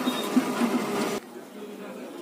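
Canon imageRUNNER 2206 copier running through its power-on start-up, a busy mechanical running noise with repeated low pulses. It cuts off suddenly a little past one second in, leaving quieter room noise.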